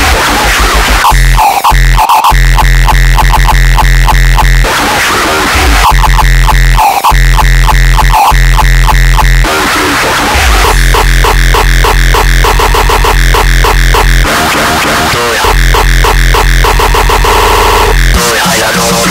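Loud uptempo hardcore electronic music with heavy bass. The low end drops out briefly three times, about five, ten and fourteen seconds in.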